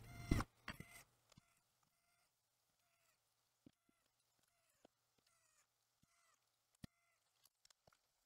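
Near silence, with a few faint knocks from handling a laptop's bottom cover in the first half second and a single sharp click a little before the end.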